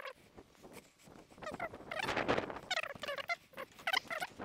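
Domestic fowl calling: several rapid warbling calls in quick succession, starting about a second and a half in.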